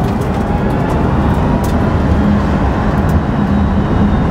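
Lucid Air alpha-prototype electric sedan accelerating hard, heard from inside the cabin: loud, steady road and tyre noise with a faint high electric-motor whine.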